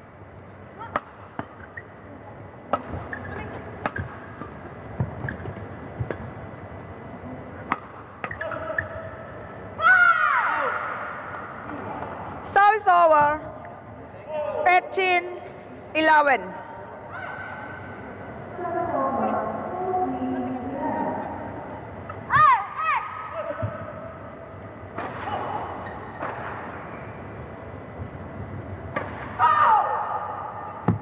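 Badminton doubles play: short sharp racket hits on the shuttlecock scattered through, with loud shouts from the players about ten seconds in, several more over the next few seconds, and another a little after twenty seconds.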